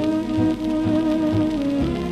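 A 1930s dance orchestra playing a fox-trot from a 78 rpm shellac record, holding a long chord that moves on near the end, with the disc's surface crackle running underneath.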